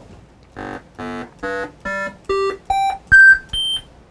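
Eight short synthesized notes played by a computer, each an octave above the one before, climbing seven octaves from a low note to a very high one at about two and a half notes a second.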